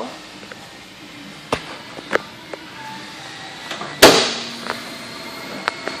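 Several light clicks, then one loud clunk about four seconds in with a short ring after it, as the hood of a 2013 Dodge Durango is unlatched and raised.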